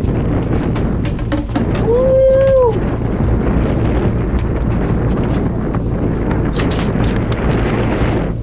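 Wind rushing over the microphone with a steady low rumble on an open boat, and one drawn-out shout, a single held call that bends up slightly and drops off, about two seconds in.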